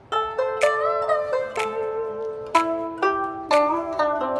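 Background music on a plucked zither-like string instrument in a Japanese koto style: single notes and chords struck every half second or so, some bent in pitch after the pluck.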